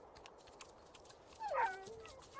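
A small dog whimpering: faint room tone, then one high whine about a second and a half in that falls in pitch.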